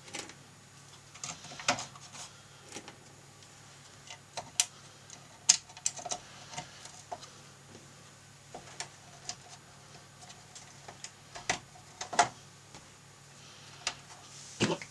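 Small metal screws clicking and clinking as they are picked out of a loose pile and handled over a circuit board. The clicks come sparse and irregular.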